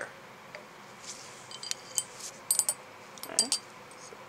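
Light clinks of glassware: a glass dropper or pipette tapping against a glass test tube while hydrochloric acid is dispensed into it, a few short ringing clicks in three small clusters.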